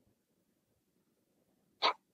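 Near silence, broken near the end by one brief, sharp sound.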